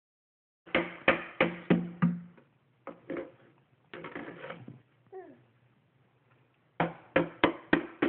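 A baby banging a metal spoon on a plastic jug: runs of sharp, hollow, ringing knocks about three a second, five near the start and five more near the end, with a scrappier rattle and a short falling squeal in between.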